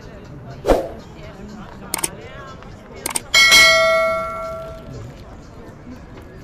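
A few sharp knocks, then a single bell-like metallic ding that rings for about a second and a half as it fades.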